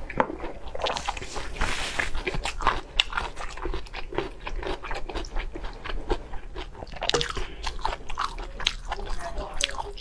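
Close-miked chewing and biting of braised offal and bok choy: a steady run of wet, smacking clicks and soft crunches, with a longer breathy stretch about two seconds in and again about seven seconds in.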